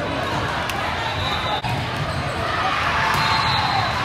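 Indoor volleyball game ambience in a large gym: a steady murmur of spectators' and players' voices with a few sharp smacks of the volleyball being played. The sound briefly drops out about one and a half seconds in.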